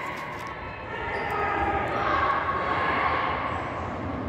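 Echoing ambience of a large, hard-surfaced concourse: footsteps on the concrete floor and faint, distant voices carrying through the hall, loudest in the middle.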